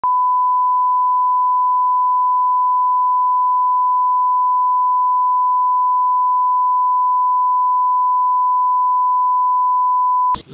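A 1 kHz reference test tone, the 'bars and tone' line-up signal that goes with SMPTE colour bars: a single pure, steady beep at constant level, used to calibrate audio levels at the head of a broadcast tape.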